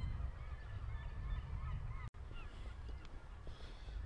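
Faint, scattered calls of distant birds over a steady low rumble.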